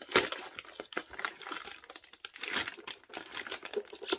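Packaging crinkling and rustling as it is handled and opened, an irregular run of crackles, the loudest just after the start.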